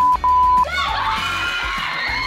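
A loud, steady, high censor bleep in two pieces with a short break, covering a contestant's spoken answer in the first half second. Music follows, with excited voices gliding up and down.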